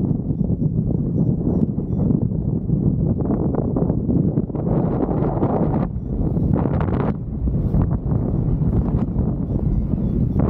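Wind buffeting the microphone of a paraglider's camera in flight: a dense low rumble of airflow, with gustier, brighter rushes from about five to seven seconds in.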